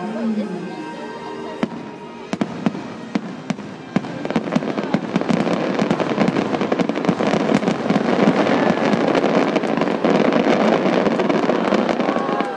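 Aerial fireworks going off: a few separate bangs, then from about four seconds in a dense run of rapid popping reports that builds and stays loud.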